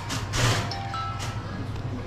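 Background music with short held notes over a steady low hum, and a brief loud rush of noise about half a second in.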